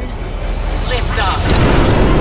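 Cartoon rocket-launch sound effect: fire-extinguisher thrusters on a junk-built rocket firing. A low rumble swells into a loud hissing rush about one and a half seconds in.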